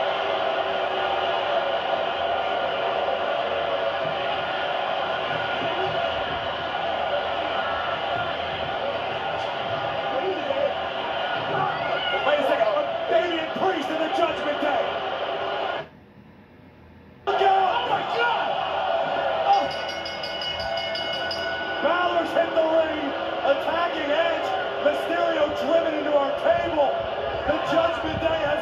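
Wrestling TV broadcast audio heard through a television's speaker: arena crowd noise with voices over it. It drops out for about a second just past the middle.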